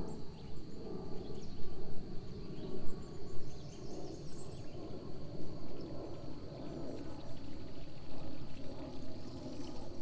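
Marsh ambience: scattered bird chirps and a steady high insect drone, over an uneven low rumbling noise.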